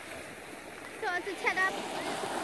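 Steady wash of shallow sea water and small waves around the dipnetters, an even rushing noise, with a brief faint voice about a second in.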